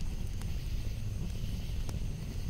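Campfire burning: a steady low rumble of flames with sharp wood crackles, two pops standing out, about half a second in and near the end.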